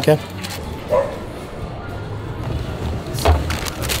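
Steady background hubbub of a busy public indoor space, with a brief voice about a second in and a loud low thump with a clatter a little after three seconds in.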